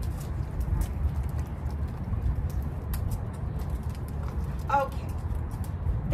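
A hungry young dog's claws clicking and tapping on a concrete floor as it shuffles and rises up for treats, in sharp irregular clicks over a steady low rumble. A short voice-like sound comes about three-quarters of the way through.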